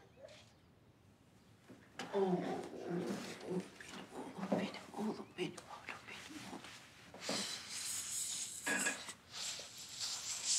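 Soft wordless vocal sounds, cooing and whimpering, as a baby is lifted and hugged. They start about two seconds in, with a breathy, hissing stretch of kisses and breaths a little after the middle.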